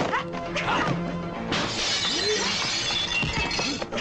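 Film soundtrack music with fight sound effects: a few sharp hits, then from about a second and a half in a long crash of shattering glass.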